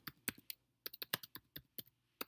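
Typing on a computer keyboard: about a dozen quick, uneven key clicks as a search is entered.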